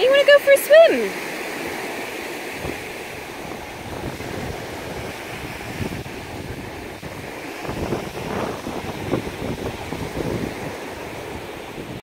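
A puppy gives four short, high-pitched whimpers in the first second, then small waves wash steadily onto a sandy beach, with wind on the microphone.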